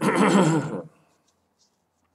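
A person coughs once, a loud cough a little under a second long at the start, followed by quiet.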